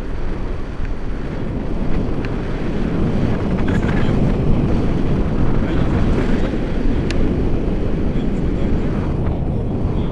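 Airflow buffeting the microphone of an action camera carried in flight on a tandem paraglider: loud, steady, low wind noise.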